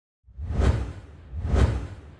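Two whoosh sound effects with a deep low boom, swelling and falling about a second apart, the second trailing off into a fading tail: the sound design of an animated logo intro.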